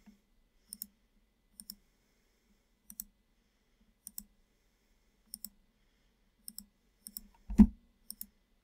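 Computer mouse button clicking, about seven short press-and-release pairs spaced roughly a second apart, each click placing a point of a sketch line. A louder short low thump near the end.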